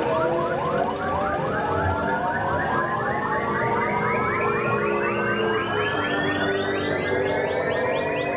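Space Mountain roller coaster's electronic ride sound effect: a synthesized tone pulsing about four times a second and climbing steadily in pitch, over lower held tones.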